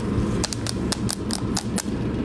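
A quick run of about eight light clicks or taps spread over a second and a half, over a steady low hum.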